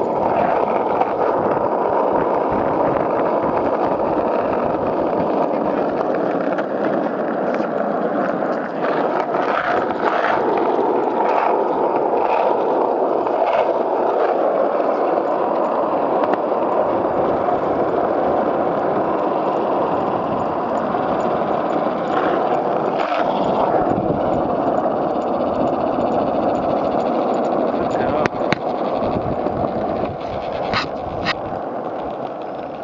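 Skateboard wheels rolling on an asphalt path: a steady, loud rolling roar with a few scattered clicks from the board over small bumps.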